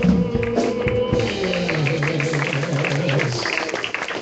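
Live gospel song with singers, instruments and quick percussive strokes. A long, wavering low note is held through the middle, and the music drops in level near the end as the song closes.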